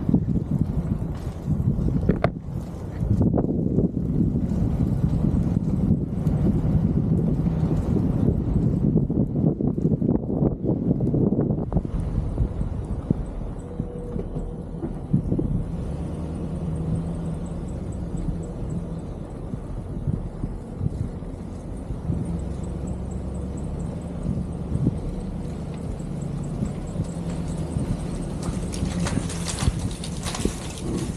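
Wind buffeting a camera microphone mounted on the roof of a moving pickup truck, over the low rumble of the truck running. The gusty noise is heavier for about the first twelve seconds, then eases to a lower, steadier rumble.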